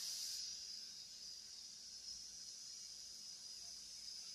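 A man's long, steady 'tss' hiss through the teeth: a singer's warm-up exhale, the air pushed out in one breath until the lungs are empty, growing slowly fainter as the breath runs out.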